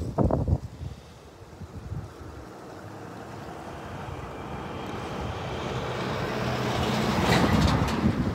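Traffic noise: a rushing sound that builds steadily over several seconds and is loudest near the end, after a few low bumps of wind on the microphone at the start.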